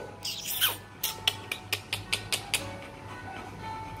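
Rottweiler panting: a quick run of about nine short breaths, some six a second, lasting about a second and a half, with a brief falling sweep just before it and faint music in the background.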